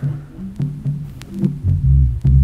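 Instrumental music from a track intro: a deep bass line stepping between low notes every fraction of a second, with faint ticks over it. A heavier low bass note comes in near the end.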